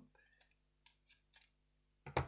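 Mostly near silence, with a few faint clicks of a pair of scissors being handled on a cutting mat, about a second in.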